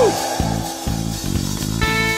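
Gospel band playing an instrumental passage: electric guitar and bass guitar over drums with a steady, repeating beat. A held, sustained note comes in near the end.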